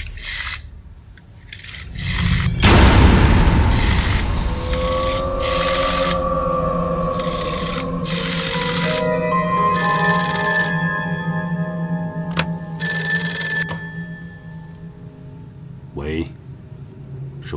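A telephone bell ringing in short repeated bursts, over dramatic background music with long held tones.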